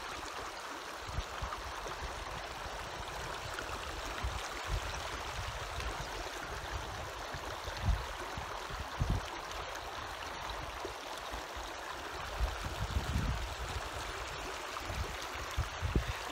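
A small mountain creek running over rocks, a steady rushing hiss, with a few brief low thumps in the second half.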